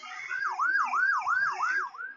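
A siren rising and falling in quick cycles, about three a second, starting a moment in, from a film trailer's soundtrack.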